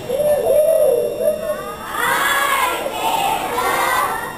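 A single voice calls out, then from about two seconds in a group of children shouts and cheers together, many voices overlapping.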